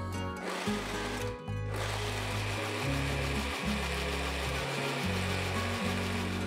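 Electric hand-blender mini chopper running with a steady whir, puréeing chopped apples in liquid until smooth, over background music.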